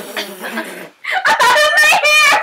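A young woman gagging and groaning into a plastic bag after tasting a foul-flavoured jelly bean, then high-pitched squealing laughter starting about a second in.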